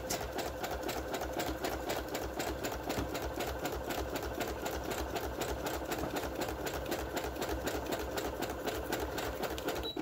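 Brother electric sewing machine running steadily, its needle punching a rapid, even rhythm as it sews a zigzag stitch through the paper edge of an envelope.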